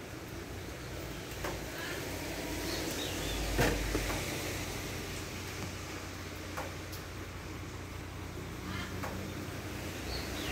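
Quiet, steady low background rumble, with a few faint clicks and a brief low swell about three and a half seconds in.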